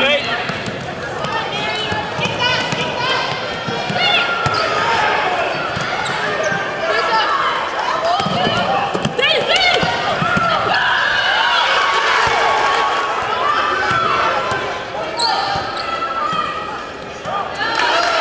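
Basketball game sounds in a gym: a ball bouncing on the hardwood floor, with voices calling out on the court.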